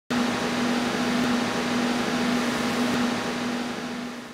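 A steady hiss with a constant low hum, like a fan or air-conditioning unit running, starting suddenly and fading out near the end.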